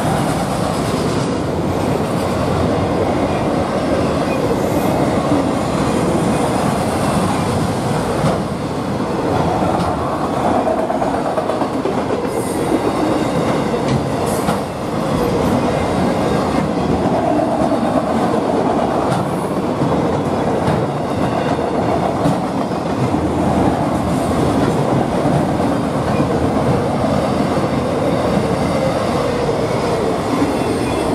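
Autorack freight cars rolling steadily past, their steel wheels clacking and rumbling over the rails in an unbroken stream.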